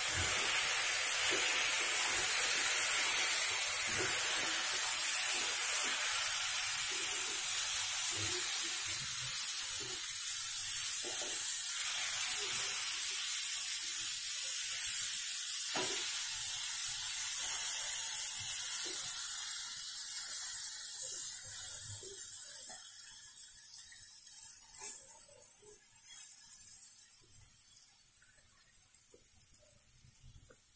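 Elephant foot yam pieces frying in oil and spices in a pan: a steady sizzle with scattered scrapes and taps of a spatula as they are stirred. The sizzle fades away over the last several seconds.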